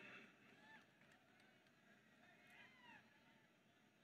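Near silence, with two faint clusters of short, arching chirp-like calls: one about half a second in and one about two and a half seconds in.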